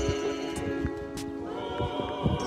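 A group of mourners singing a hymn together, holding long notes.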